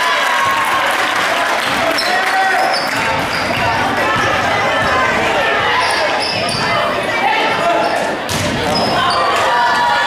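Basketball game sounds in a gym: a ball bouncing on the hardwood court and sneakers squeaking, over a steady hubbub of voices from players and spectators.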